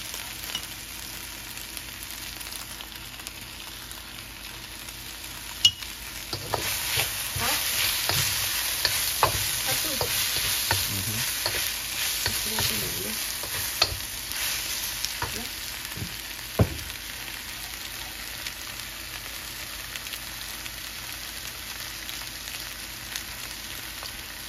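Shrimp and ashitaba greens sizzling in a steel wok as a wooden spatula stirs and scrapes them, with a few sharp clacks of the spatula against the wok. The sizzling and scraping swell when the stirring picks up about a quarter of the way in, then settle back to a steady sizzle after the middle.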